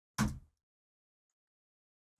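Mostly dead silence, with one short vocal sound from a man, about a third of a second long, shortly after the start.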